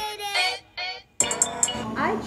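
Lo-fi background music with a pitched, sung or sampled vocal line. It cuts off a little over a second in and gives way to room sound with a few clicks and faint voices.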